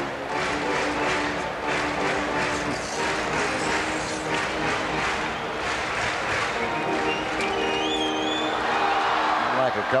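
Stadium organ music with held, sustained notes over the steady murmur of a ballpark crowd.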